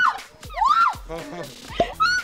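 A woman's high-pitched squeals and shrieks, several short cries that each rise and fall in pitch, over background music.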